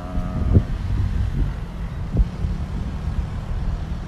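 Low, steady outdoor rumble on a phone microphone with a few soft knocks, after a woman's drawn-out vowel trails off at the very start.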